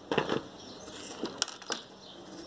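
Pine bark chips crunching and clicking as gloved hands press the potting bark around an orchid in a wooden pot: a short crunch near the start, then a few sharp clicks.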